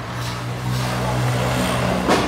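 Small drum concrete mixer running, its motor giving a steady low hum that swells slightly in the middle.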